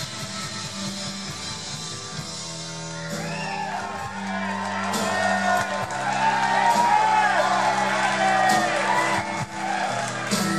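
A live rock band playing, with strummed acoustic guitar, electric guitar, bass and drums in a large room. From about three seconds in, audience whoops and shouts rise over the music and grow louder.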